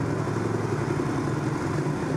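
Supermoto motorcycle engine running steadily at an even pitch, with no revving.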